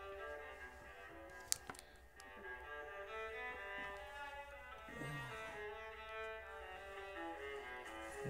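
Soft background music of bowed strings playing long held notes, with one sharp click about a second and a half in.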